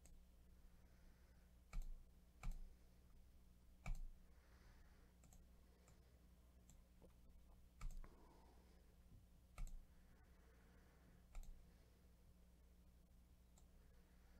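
Computer mouse clicking against near silence: about six short, sharp clicks a second or two apart, some in quick pairs.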